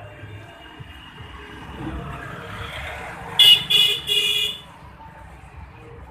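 A vehicle horn honks three times in quick succession, the third toot the longest, over street traffic noise that swells just before it.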